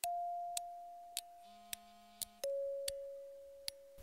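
An electronic beep tone that holds and slowly fades, then drops to a lower held tone a little past halfway, with soft ticks a little less than twice a second and a brief low buzz near the middle.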